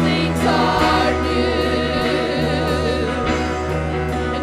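A gospel worship song sung by a group of men's and women's voices into microphones. The voices hold long notes with a wavering pitch over a steady low accompaniment.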